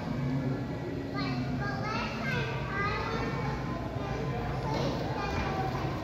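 Children's voices calling and chattering in a large indoor hall, over a steady low hum.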